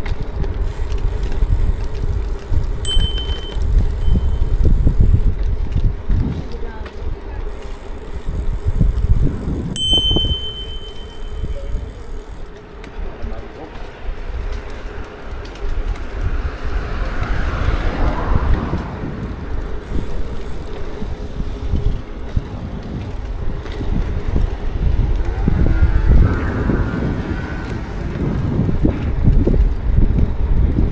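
Wind buffeting the microphone and tyres rumbling over brick paving as a bicycle rides along, with a bicycle bell ringing briefly twice in the first third.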